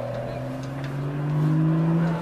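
A motor vehicle engine accelerating, its pitch rising steadily and growing louder through the second half.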